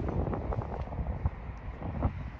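Wind buffeting the microphone: an uneven low noise with a few faint ticks.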